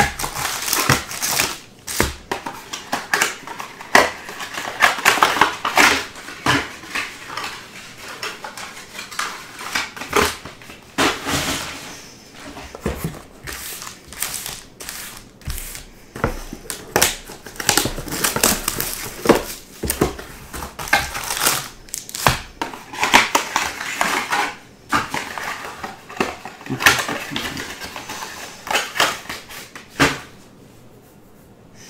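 Foil-wrapped trading card packs and cardboard boxes being handled on a table: a busy run of rustling and sharp wrapper noise, with many light knocks as packs are pulled from the boxes and set down in stacks.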